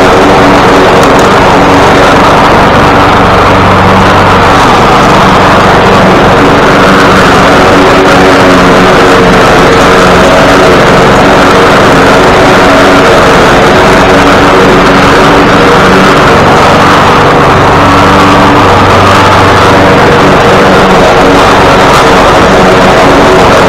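Poulan walk-behind gasoline lawn mower engine running steadily while mowing, very loud and close to the microphone, its pitch wavering slightly.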